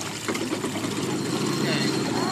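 Pickup truck engine idling, a steady low hum, with faint voices in the background near the end.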